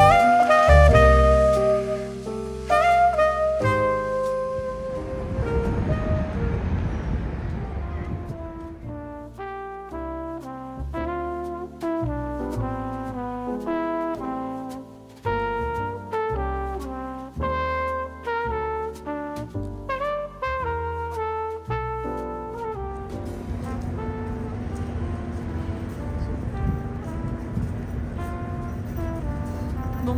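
Instrumental background music playing a melody of distinct notes. In the last several seconds a steady wash of street noise rises under it.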